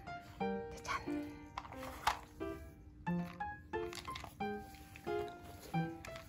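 Light, comic background music of short plucked and keyed notes in a bouncy rhythm, with a couple of brief noisy clicks about one and two seconds in.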